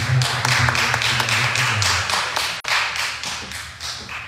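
Irregular, fairly quick sharp claps or taps over a hiss, thinning out toward the end. A low steady tone with overtones sounds beneath them for the first two seconds, then fades out.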